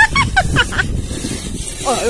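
A woman's shrieking laughter in short, pitch-bending calls through the first second, over a steady low rumble, then a shouted 'oi' near the end.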